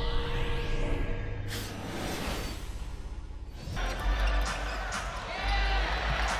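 Broadcast intro sting with whooshes and an impact hit, giving way about four seconds in to arena game sound: crowd noise and a basketball dribbling on the hardwood.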